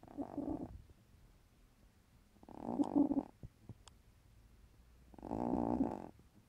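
Elderly sleeping domestic cat snoring loudly, three rasping snores about two and a half seconds apart, each lasting most of a second.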